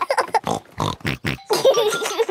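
Cartoon pig characters laughing and snorting: a quick run of short snorts and laughs.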